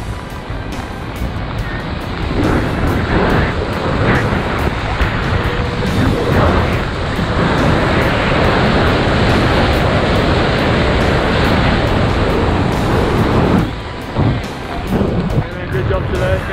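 Freefall wind rushing over the camera microphone, a dense steady rush that grows louder about two seconds in and dips briefly near the end. Background music with a beat plays beneath it.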